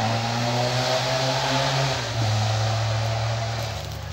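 Motor vehicle passing on a road, its engine a steady hum that drops a little in pitch about halfway through and fades near the end.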